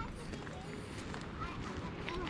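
Indistinct conversation of nearby people, over a low rumble on the microphone.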